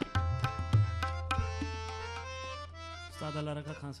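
Tabla strokes over a harmonium playing the repeating lehra melody. The tabla stops about a second and a half in while the harmonium notes carry on, and near the end a man begins speaking over it.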